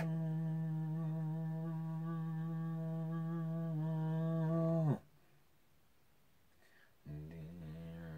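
A man humming a long, steady held note that sags in pitch and stops about five seconds in; after a short pause he starts another held note, slightly higher.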